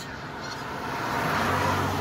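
A car approaching along the road, its tyre and engine noise growing steadily louder.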